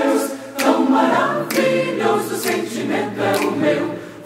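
Mixed choir singing a cappella in Portuguese in four-part harmony, the phrase "Tão maravilhoso sentimento é o meu".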